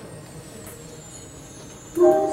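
A lull in a video's soundtrack music played in a hall: a low, steady hiss of room noise with a faint high tone sliding slightly downward. The music comes back loudly at the very end.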